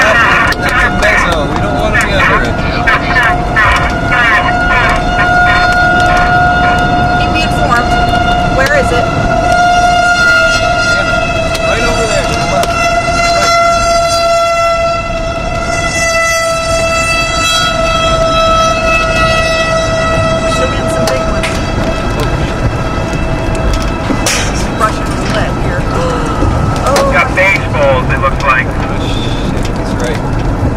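An outdoor tornado warning siren sounding on one steady pitch, heard from inside a moving car over its road noise. It fades after about twenty seconds. Frequent sharp ticks strike the car in the first several seconds and again near the end.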